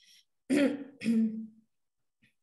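A person clearing their throat in two short parts, "a-hem", over the call audio.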